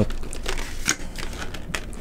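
Cardboard product box being handled and opened by hand: scattered rustles, crinkles and small clicks of the packaging.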